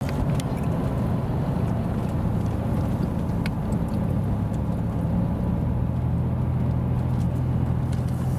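Car engine and road noise heard inside the cabin while driving: a steady low drone, with a few faint clicks near the start and about three and a half seconds in.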